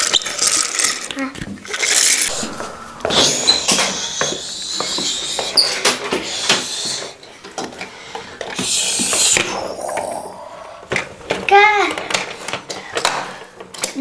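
Young children's voices and vocal play while handling plastic toys, with long hissing noises a few seconds in and again near the middle, and scattered light plastic clicks.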